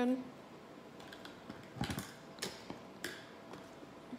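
Faint handling noises from homemade pink glue slime being worked in a plastic tub: a few sparse, short clicks and a soft knock about halfway through.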